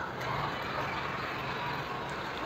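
Low, steady background noise with no distinct event.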